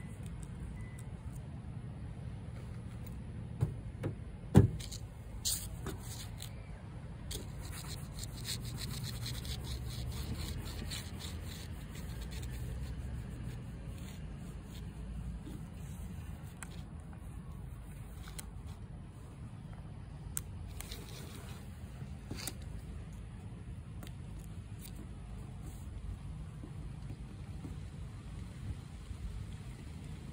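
A hand and towel rub vinyl decal transfer tape onto a car's rear window glass, giving faint scraping and crackling over a steady low rumble. A few sharp knocks come about four to five seconds in, one much louder than the rest.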